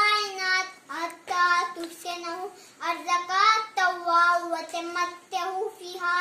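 A young boy's voice chanting in a melodic, sung recitation. He holds long notes in a series of phrases, each broken by a short pause.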